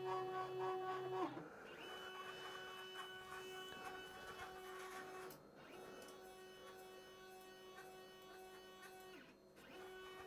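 Stepper motors of a DIY CNC hotwire foam cutter whining faintly in steady pitched tones as the machine homes its axes against the limit switches. The pitch changes about a second in, and the whine then runs in stretches of about four seconds with short breaks between moves.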